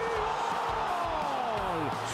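A football commentator's long drawn-out goal shout, one held note falling in pitch over about two seconds, over a cheering stadium crowd.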